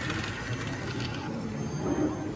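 Steady background noise of a busy exhibition hall, with faint distant voices near the end.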